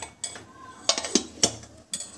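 Metal kitchen utensils and vessels clinking and knocking together: about half a dozen sharp, separate clinks spread across two seconds.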